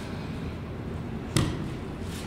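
A single sharp thump a little past halfway, over a steady low background hum.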